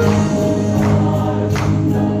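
A choir of voices singing a gospel hymn in long held notes, with a couple of percussion strikes in the second half.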